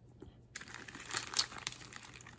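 Crinkling plastic candy bags as a hand rummages in them and pulls out foil-wrapped chocolate eggs, starting about half a second in with a run of irregular crackles.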